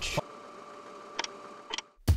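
Faint steady hiss with a thin hum, and two short ticks, one a little over a second in and one near the end. It cuts off abruptly just before the narration resumes.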